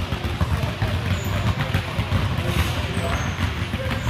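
Many basketballs dribbled at once on a hardwood gym floor: a dense, continuous patter of overlapping bounces, with voices of children and coaches mixed in.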